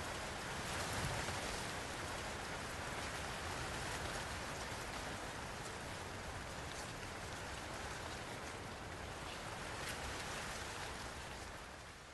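Steady, even background hiss of an outdoor field recording, with no distinct events, fading out near the end.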